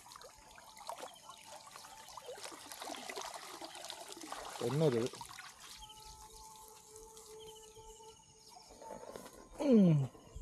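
Water trickling and dripping from a wet nylon cast net as it is hauled out of the water with fish in it, with a short vocal exclamation about halfway through and a louder, falling-pitched exclamation near the end.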